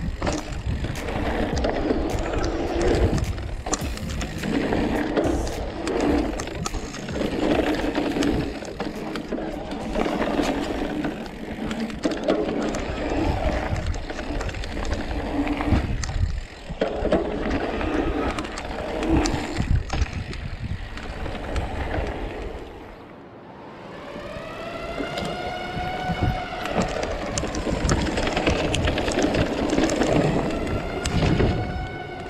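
Rough trail noise from an e-mountain bike ridden over dirt and gravel, with wind on the camera microphone and frequent rattles and knocks from the bike. Near the end, after a brief lull, the bike's electric mid-drive motor whines, its pitch rising and falling with the pedalling.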